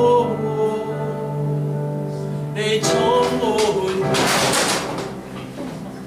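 Electronic keyboard holding sustained chords under a man singing a slow worship song.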